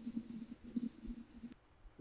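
A steady high-pitched insect-like trill coming through a video-call participant's open microphone, with a faint low rumble beneath it; it cuts off abruptly about one and a half seconds in.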